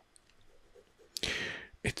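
Close-miked mouth clicks and a short breath in during a pause in soft-spoken talk: a sharp click about a second in, a brief hissy intake after it, and another click just before speech resumes.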